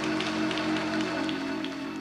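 Church music holding a sustained chord, with hands clapping along about three times a second as the congregation gives a hand of praise.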